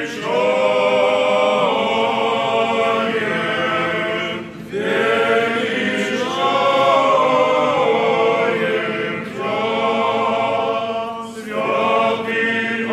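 Church choir singing Orthodox liturgical chant a cappella, in held phrases of a few seconds each, with short breaks between them about four and a half, nine and a half and eleven and a half seconds in.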